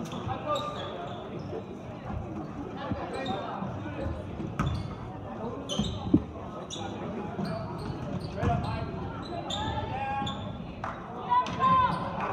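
A basketball being dribbled and passed on a hardwood gym floor, with short high sneaker squeaks, over the steady chatter of spectators in a large hall. Voices rise near the end.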